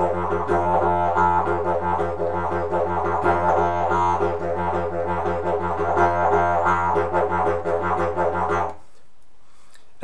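Didgeridoo played as a continuous low drone, broken by quick repeating tongue-and-voice pulses that make up the 'rolling' rhythm. The drone stops abruptly about nine seconds in.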